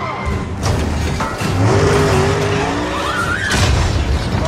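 Film car-chase sound mix: car engines revving and tyres skidding, with a few sharp crash hits.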